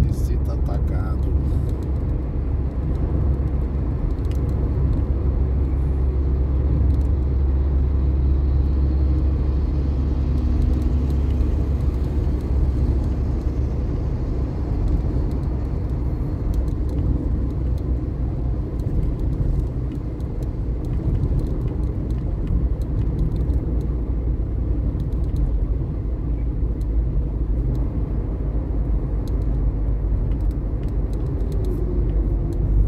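Car driving at highway speed, heard from inside the cabin: a steady low rumble of engine and tyres on the road.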